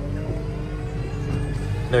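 Manitou telehandler running steadily, heard from inside its cab as a low engine hum with a faint steady whine over it.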